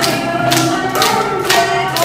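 Upbeat music with a steady beat of about two strokes a second.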